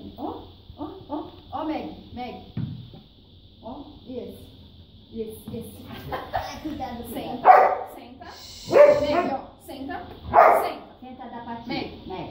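A dog barking a few times in play for a toy ball, the loudest barks coming in the second half, over people talking.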